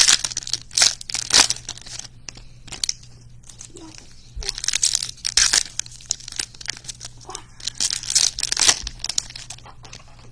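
Foil trading-card pack wrappers being torn open and crinkled in hand, in three short crackly bouts.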